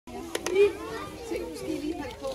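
A group of young children chattering and calling out over one another, with two quick clicks near the start.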